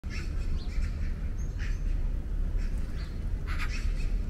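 Small birds chirping, short calls repeated every half second or so, over a low steady rumble.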